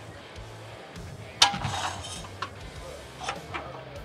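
Tire changer's duckbill mount/demount head being brought down on its steel vertical shaft: one sharp metallic clank about a second and a half in, followed by a few lighter clicks. Background music plays underneath.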